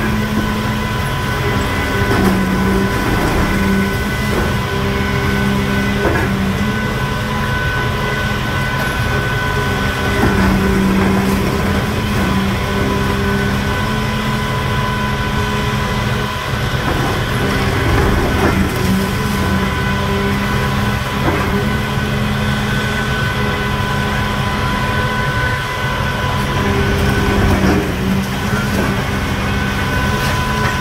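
Demolition excavator's diesel engine and hydraulics running steadily, a constant hum with a steady whine, as its crusher jaws work the concrete of the building, with a few faint knocks of breaking concrete.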